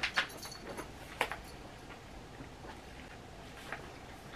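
Faint mouth sounds of someone chewing a firm gummy candy: a few short, sharp clicks and smacks, two just after the start, one about a second in and one near the end.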